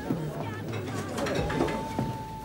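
Pub background: a murmur of voices with music playing. A single steady note is held from about three-quarters of the way through.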